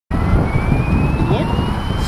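Electric 450-size ALZRC Devil 450 Fast SDC RC helicopter spooling up on the ground: its motor and rotor whine rising slowly and steadily in pitch over a low rushing noise.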